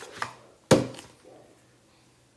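One sharp knock of an object hitting a hard kitchen surface about two thirds of a second in, dying away quickly, with a small click just before it.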